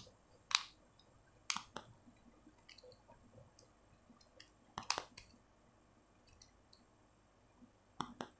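Faint, scattered clicks and small metallic taps of a precision screwdriver working the tiny screws of a spinning reel's one-way bearing cover, with a slightly louder cluster of clicks about five seconds in.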